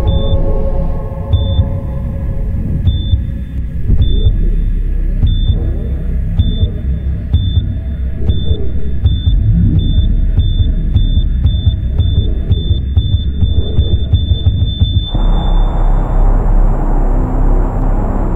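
Programme ident music: a deep rumbling electronic score under a short high beep like a heart monitor. The beeps come about once a second at first, then speed up until they run together near the end, where the music turns brighter and fuller.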